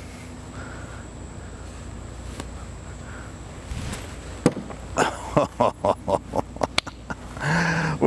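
A Cold Steel Torpedo, a heavy steel throwing spike, strikes a wooden target board with a single sharp knock about four and a half seconds in. A man laughs right after.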